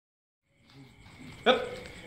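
A single punch smacking a Muay Thai pad about one and a half seconds in, with a short vocal grunt on the strike.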